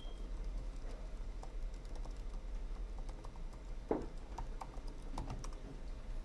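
Faint, irregular key clicks of someone typing on a computer keyboard, with one stronger click about four seconds in, over a low steady hum.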